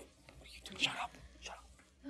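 Hushed whispering voices, in breathy bursts, loudest a little before the middle.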